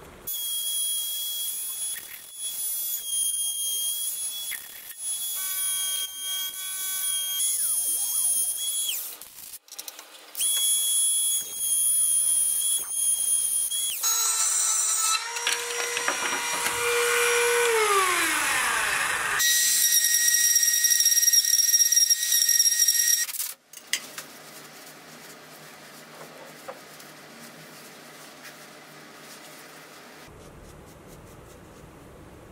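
A small high-speed power tool cutting into a cracked African blackwood and resin vase. Its high whine starts and stops several times, drops in pitch as the tool slows around the middle, then runs again at high speed. It gives way to a quieter steady sound over the last several seconds.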